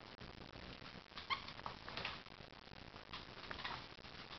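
A corgi mouthing and picking up a plush toy: several short, high squeaks and light scuffles, the clearest squeak about a second in.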